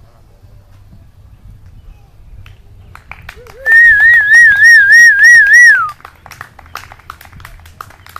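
A loud, warbling cheering whistle from a person, starting a little past halfway. It wavers about four times a second for about two seconds, then drops in pitch as it ends.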